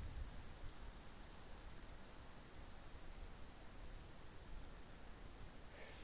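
Faint, steady rain falling, with scattered light ticks of drops.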